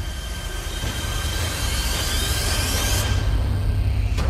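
Dramatic soundtrack effect: a rising whoosh that swells over a low steady drone and cuts off suddenly about three seconds in.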